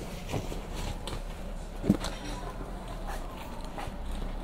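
Soft rustling and scattered light knocks of a hand rummaging in a leather bomber jacket's pocket, with one louder thump about two seconds in.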